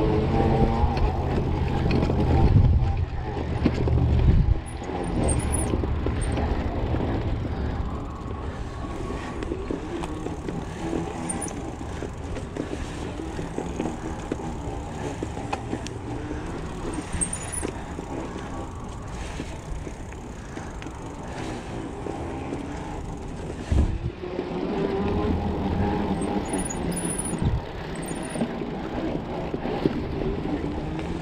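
Mountain bike riding fast over a dirt singletrack, heard from the handlebar: a continuous rough rumble of tyres and rattling frame and components, with wind noise, louder over the first several seconds. A sharp knock comes late on, as the bike hits a bump.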